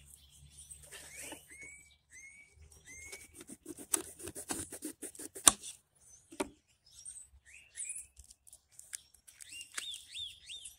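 Quick, irregular clicks and knocks of a jalapeno pepper being cut and pulled apart by hand on a wooden cutting board, densest in the middle, with one sharp knock about five and a half seconds in. Small birds chirp in the background.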